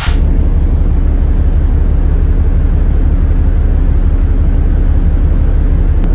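A loud, steady low rumble with a hiss over it, starting abruptly with a brief click.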